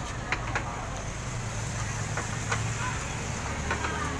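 Steady low background hum with a few faint, light clicks and taps scattered through it.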